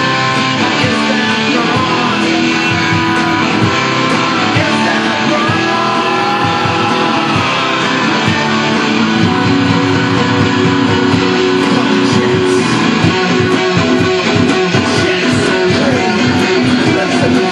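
Garage rock band playing loud, with strummed electric guitar to the fore over bass guitar and a steady beat.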